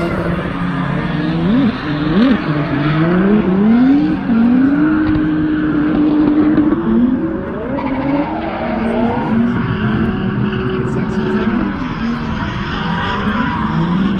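Drift car engines revving hard, the pitch climbing in quick steps with gear changes, then held steady for a couple of seconds before dropping and rising again, with tyres skidding and squealing under them.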